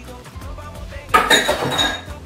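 Stainless steel mixing bowl set down on a metal sink counter a little after a second in: a clatter with a brief metallic ring, over soft background music.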